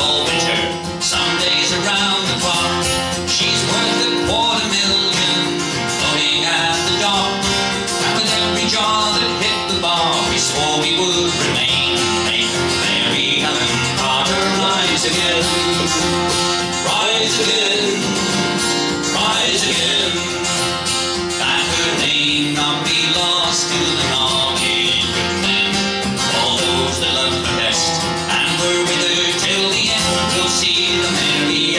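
Acoustic guitar played live in a steady folk rhythm, strummed and picked.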